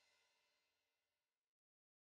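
Near silence: the last faint tail of background music dies away, then dead digital silence about one and a half seconds in.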